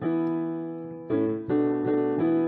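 Background piano music: slow chords, each struck and then left to fade, with a new chord about a second in and another half a second later.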